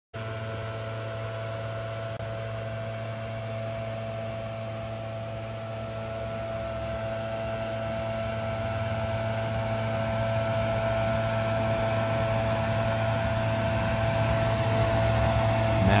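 Backpack leaf blower's small engine running steadily at one constant speed, growing gradually louder.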